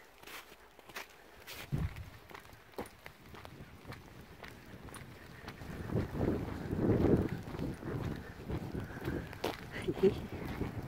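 Footsteps of someone walking, heard as scattered crunches and scuffs. From about six seconds in they are joined by a louder, uneven rumble of wind buffeting the microphone.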